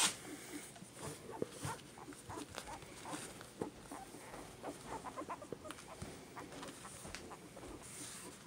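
Two-week-old toy poodle puppies making many brief squeaks and grunts, with small scuffling sounds as they crawl over one another on a mat.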